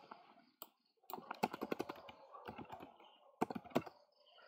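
Typing on a computer keyboard: a quick run of keystrokes about a second in, a few scattered presses, then two sharper key presses near the end as a search is entered.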